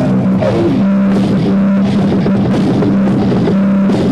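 Live rock band playing loud: guitar and bass holding a low note over the drum kit, with a note sliding down in pitch just under a second in.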